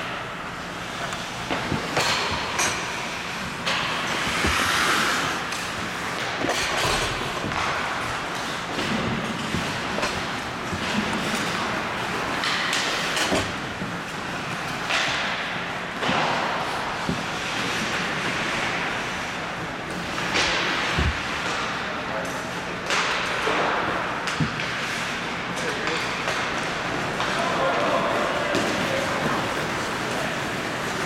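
Ice hockey play in a large indoor arena: skate blades scraping the ice and sticks hitting the puck and ice in short bursts every second or two, with occasional thuds and players' voices.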